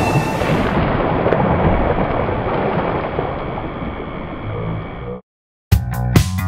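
A wooden board crashes into the water in a heavy splash, followed by a long rumbling wash of water noise that slowly fades and cuts off suddenly about five seconds in.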